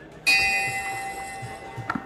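Brass meeting bell struck once, ringing with several clear tones that slowly fade, with a sharp knock near the end; rung to open the club meeting.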